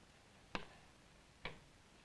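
Two short sharp clicks about a second apart, from a label card being fixed onto a lecture chart board, with faint room tone between.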